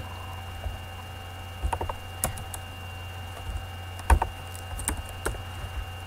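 A few scattered keystrokes and clicks on a computer keyboard and mouse while typing numbers into a field, over a steady low hum and a faint high whine.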